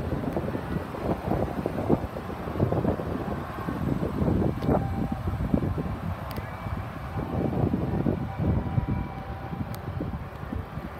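Wind buffeting the microphone: an irregular low rumble that keeps swelling and dropping, with a few faint clicks.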